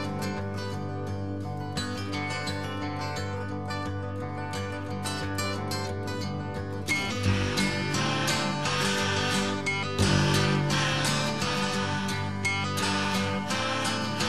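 Instrumental break in a folk song, led by acoustic guitar with no singing. The music grows fuller and louder about halfway through.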